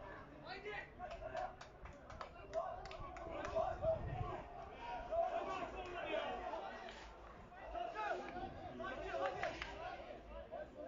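Several people on and around a football pitch shouting and talking over one another just after a goal, with scattered sharp clicks.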